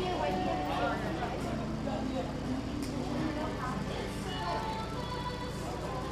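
Indistinct voices and music mixed with a steady low hum.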